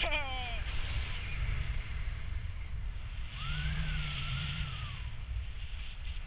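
Wind rushing over the camera microphone in paraglider flight, a steady low rumble. A person's high whoop glides sharply down in pitch right at the start, and a longer drawn-out vocal call rises and falls in pitch in the middle.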